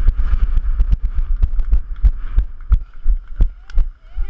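Wind buffeting a GoPro's microphone as its wearer sprints, with rhythmic thumps from the running strides at about three a second.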